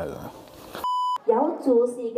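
A short, steady, high electronic beep, a third of a second long, about a second in. It is followed by a woman's voice beginning to sing in long held notes.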